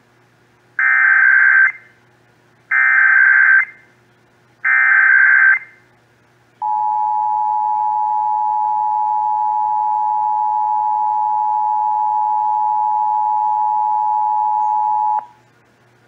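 Emergency Alert System test tones heard through a Sangean portable radio's speaker: three one-second bursts of SAME data-header tones about two seconds apart, then the steady two-tone EAS attention signal (853 and 960 Hz) held for about eight and a half seconds before cutting off.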